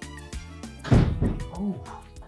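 Background music with one loud thunk about a second in, followed by a short vocal exclamation.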